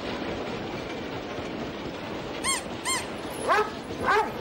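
A Doberman barking in short calls in the second half, the loudest coming near the end, over a steady background hubbub.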